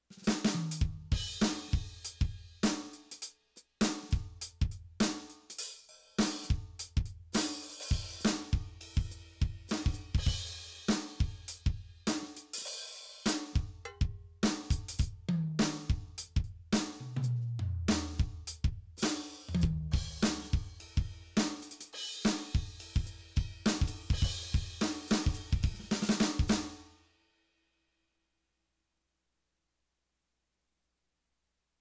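Simmons SD1250 electronic drum kit played through its Modern Maple kit sounds, fed straight from the module with no stick-on-pad noise: a kick, snare, hi-hat and cymbal groove with a short break about three seconds in, tom fills stepping down in pitch in the middle, and a stop about 27 seconds in.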